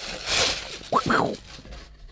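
Thin plastic packaging bag crinkling and rustling as a microphone pop filter is pulled out of it, in two short bouts that die down toward the end.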